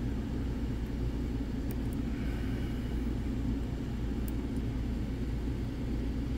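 Steady low background rumble, with a few faint, light clicks of a hook pick working the pin stack of an M&C Color lock while setting a pin.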